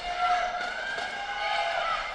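Indoor arena ambience: the murmur of the hall with a faint, drawn-out call held over it.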